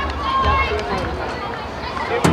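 Indistinct calls and chatter from players and spectators at an outdoor rugby league match, with a steady low rumble underneath.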